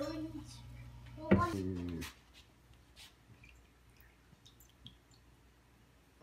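A person's voice, with a louder burst about a second in, while a steady low hum runs underneath. After about two seconds the hum stops and only quiet room tone with a few faint clicks remains.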